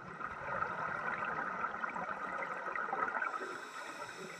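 Scuba breathing underwater: air through a regulator and exhaled bubbles, a grainy bubbling hiss that swells about a third of a second in and eases off shortly before the end.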